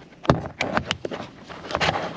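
Camera handling noise: fingers rubbing and knocking against the camera body and microphone as it is repositioned, a few sharp taps over a rustling sound.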